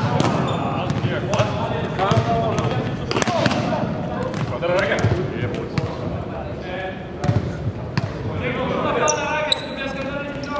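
Volleyballs being struck and bouncing on the court in a large indoor arena, sharp hits scattered through, over indistinct voices of players.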